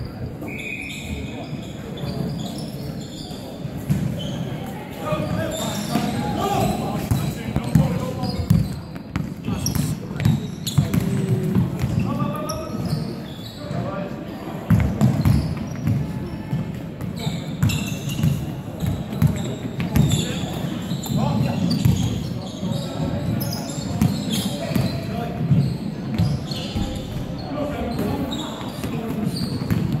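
Indoor basketball game: the ball repeatedly bouncing on a sprung wooden court, with players' indistinct shouts and calls and short high squeaks, all echoing in a large hall.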